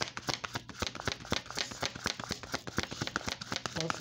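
A deck of tarot cards shuffled by hand: a rapid, uneven run of crisp card clicks and riffles.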